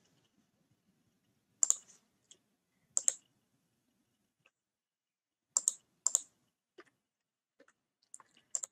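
Four sharp clicks spread over a few seconds, each a quick double click, with a few fainter ticks between: clicks of a computer control as the lecture presentation is moved on to the next slide.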